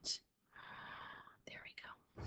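A soft breath close to the microphone, lasting under a second, followed by a few faint short mouth clicks.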